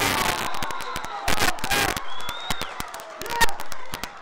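Players shouting on an outdoor football pitch, with loud calls at the start, about halfway through and near the end, and many sharp knocks and clicks throughout.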